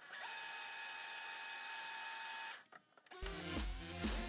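A steady mechanical whir with a high hum over hiss, lasting about two and a half seconds and cutting off suddenly. After a short pause, electronic dance music starts near the end.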